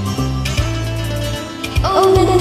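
Karaoke backing track in an instrumental passage: steady held bass notes, plucked string notes and light, evenly spaced percussion ticks. A woman's singing voice slides in near the end.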